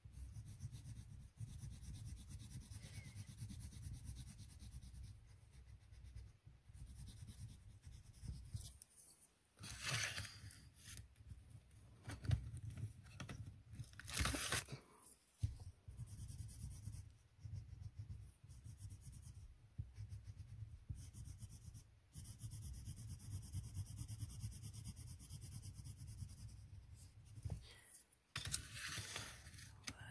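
Colour pencil scratching on paper, writing colour names on a swatch chart in small strokes, with a few louder scrapes against the sheet.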